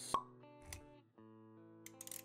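Intro music with held notes, and a sharp pop sound effect just after the start with a softer pop a little later. The music drops out briefly after about a second and comes back.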